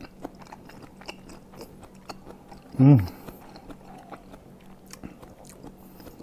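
A person chewing a mouthful of rujak (cut fruit in sauce) close to a clip-on microphone: many small soft crunches and mouth clicks, with one short hummed "hmm" about three seconds in, the loudest sound.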